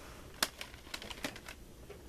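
Plastic CD jewel cases clicking and clacking as they are handled and shifted on a stack: a sharp click about half a second in, then several lighter clicks.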